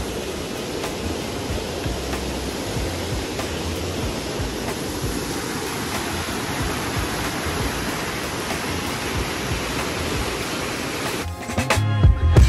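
Steady rushing of a fast whitewater stream and waterfall, an even wash of water noise. It cuts off suddenly about a second before the end as music with drums comes in.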